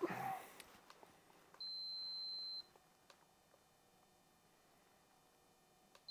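A single steady electronic beep, about a second long, from a handheld digital vibration meter.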